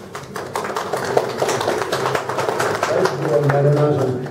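A small audience applauding in dense, irregular claps, which thin out about three seconds in as voices take over.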